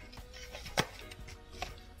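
A sharp knock against a glass mixing bowl a little under a second in, with a fainter tap later, as seasoned fish is handled and rubbed in the bowl.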